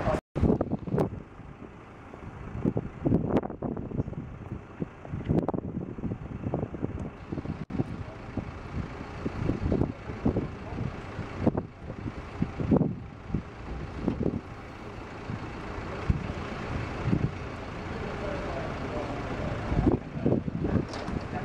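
Street ambience: a steady low rumble with indistinct voices talking at a distance, too faint to make out words.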